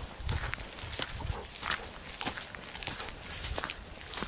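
Footsteps on a gravel track at a walking pace, with a step roughly every half second.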